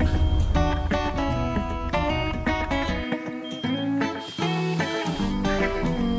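Background music with a plucked guitar melody. Underneath, a low steady rumble drops out for about two seconds in the middle.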